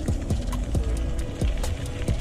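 Bicycle rattling with irregular clicks and knocks as its tyres roll over a gravel track, over a low rumble.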